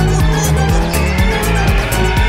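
Background music with a steady beat, overlaid with a cartoon car tire-squeal sound effect that starts about halfway in and slides slowly down in pitch.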